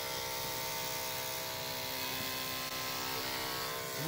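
Corded electric dog clipper with a #7 blade running with a steady buzzing hum as it is pushed through a small dog's coat. The blade is dragging through the fur because it is not sharp enough.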